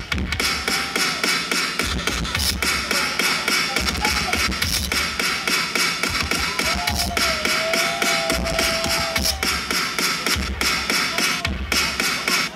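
DJ-mixed music played loud over a large PA speaker system, with a steady beat, heavy bass and a gliding melodic line in the middle.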